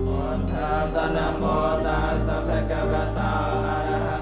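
Buddhist monks chanting a blessing together in a low, wavering mantra, over a steady musical drone.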